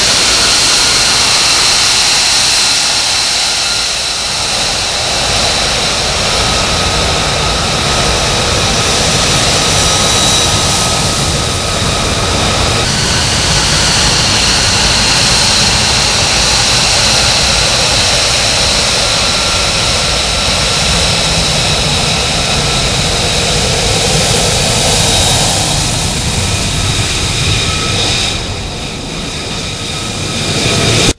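An F-35's single Pratt & Whitney F135 turbofan running as the jet taxis past: a loud, steady jet noise with a high whine on top. It grows a little softer near the end as the jet moves away.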